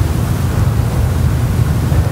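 Steady low rumbling noise with a fainter hiss above it, a background or microphone noise floor. It swells up after the speech stops and stays about as loud as the speech.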